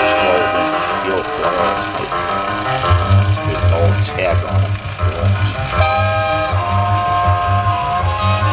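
Music playing through the loudspeaker of a 1938 Airline 62-1100 tube console radio, with a steady bass beat coming in about three seconds in.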